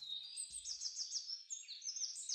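Birds chirping in quick, high-pitched strokes: a dawn birdsong ambience effect. A short low note sounds about half a second in.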